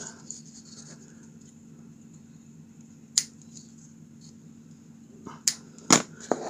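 Small scissors snipping off the excess ends of twine whipped around a leather slingshot tab: a few sharp clicks, one about three seconds in and two close together near the end, over a faint steady hum.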